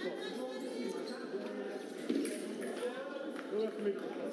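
Indistinct voices and chatter echoing in a large sports hall, with a couple of light knocks.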